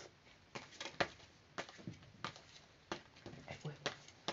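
Tarot cards being shuffled by hand and one laid down on the table: a run of quiet, irregular clicks and taps.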